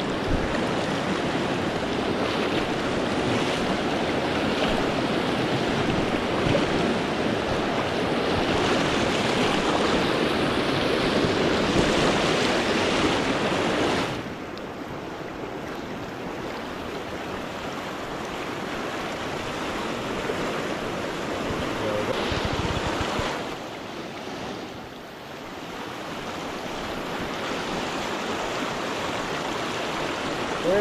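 Fast river rapids rushing over rocks: a steady wash of white water. It is louder for the first half, then drops suddenly about halfway through.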